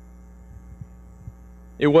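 Steady low electrical mains hum through a pause in speech, with a man's voice starting near the end.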